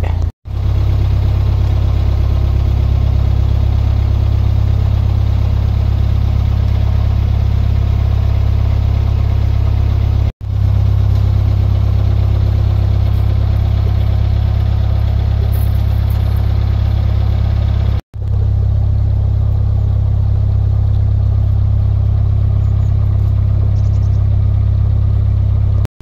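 Narrowboat's diesel engine running steadily at slow cruising revs, a loud, even, low drone. It is cut off for an instant three times where the footage is edited.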